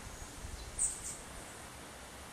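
Faint rainforest background sound with a single short, high chirp a little under a second in.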